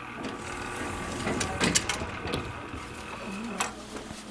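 Elevator door machinery running, a mechanical whir with sharp clunks about a second and a half in and again near the end.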